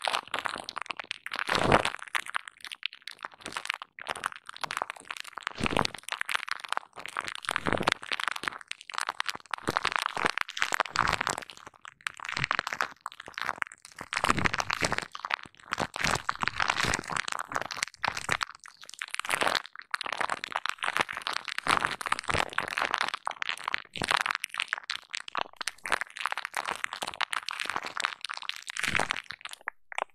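Hands rubbing and scrunching foam over bubble wrap: continuous crinkling and crackling of the plastic in irregular strokes a second or two long, an ASMR stand-in for the sound of lathering hair.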